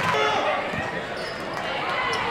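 A basketball bouncing on a gym floor during live play, with voices from players and spectators echoing in the gym.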